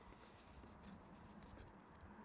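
Near silence: faint background hiss and low hum.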